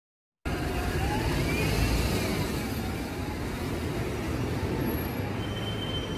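Street traffic noise from congested cars and buses: a steady low rumble of engines and road noise, starting about half a second in.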